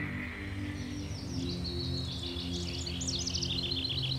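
A band holds a sustained low chord while high, rapid bird-like chirps and trills run above it, growing busier from about a second and a half in.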